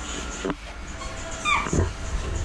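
A short dog-like whimper about one and a half seconds in, its pitch falling, after a sharp click about half a second in.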